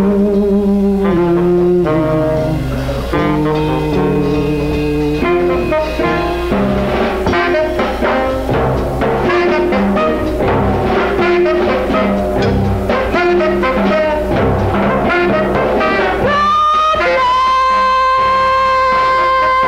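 Live band music from an early-1970s bootleg concert recording, in a passage without sung lyrics. Held notes at the start give way to a busy, rhythmic stretch, and a long high held note enters near the end.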